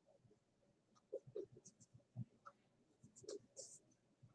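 Dry-erase marker writing on a whiteboard: a few faint, short strokes with gaps between them.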